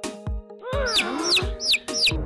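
Newly hatched chicks peeping: four short high peeps, each falling in pitch, starting about halfway through, over background music with a beat.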